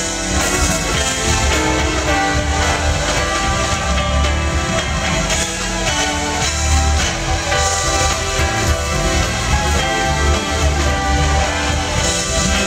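A live funk band playing, with electric guitar and bass guitar over drums and keyboards; the bass notes are strong and steady throughout.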